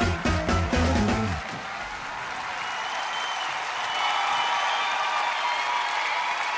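Live rock band with drums and electric guitar, stopping abruptly about a second and a half in as the song ends. Audience applause and cheering follow and slowly grow louder.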